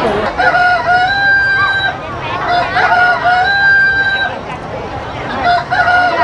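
Rooster crowing three times, about two and a half seconds apart, each crow about a second and a half long and held at a steady pitch. The crows are identical each time, as a looped recording would be. Crowd chatter runs underneath.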